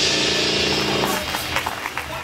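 A live band with tuba and trumpet holds its final chord, which stops about a second in. A few scattered handclaps follow as the song ends.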